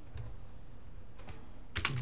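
A few separate keystrokes on a computer keyboard, the loudest click near the end.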